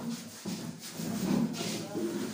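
Indistinct voices of several men talking in a room.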